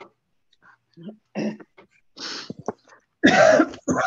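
A woman coughing and clearing her throat, heard over a video call: a few short coughs, then a loud, longer cough about three seconds in.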